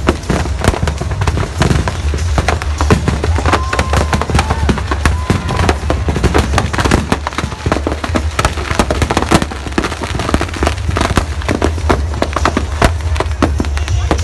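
Firecrackers going off in a burning Dussehra effigy: a dense, irregular run of sharp cracks and bangs over a steady low rumble.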